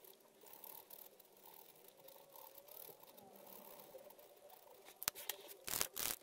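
Faint scratching of a POSCA paint marker's tip on card, then near the end a couple of sharp clicks and a louder knock as markers are handled and set down on the wooden table.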